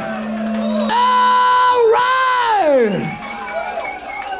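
Audience cheering as a live rock song ends, with a long, loud whoop that is held and then falls steeply in pitch about three seconds in.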